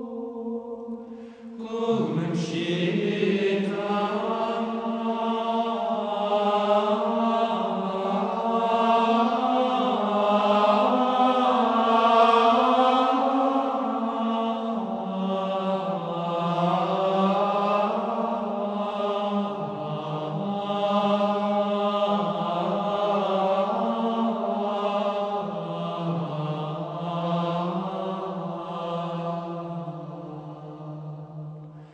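Gregorian chant: voices singing a slow, sustained melody that moves in steps. The singing dips briefly about a second and a half in, then returns fuller.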